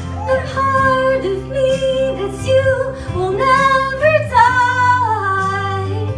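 A woman singing live into a handheld microphone, holding long notes that slide up and down between pitches, over a steady instrumental accompaniment.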